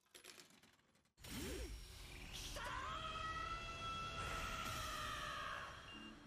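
Anime sound effects of a vending machine taking coins: a quiet mechanical clatter starting about a second in, then a steady electronic tone of several notes held together as the machine powers back up.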